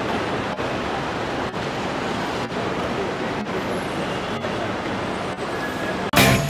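Steady traffic noise and general bustle outside an airport terminal, with no clear voices, broken by brief dropouts about once a second.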